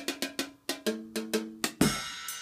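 Red Dragon portable drum set played with sticks: a quick run of strikes, about six a second, on small cymbals, bells and pads. Some strikes in the middle give bell-like pitched notes. Near the end a heavier hit with a low thump rings on.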